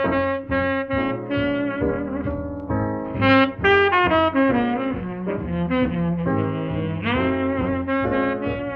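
Tenor saxophone playing a swing melody of held and sliding notes over piano, string bass and drums, on a 1943 jazz quartet recording.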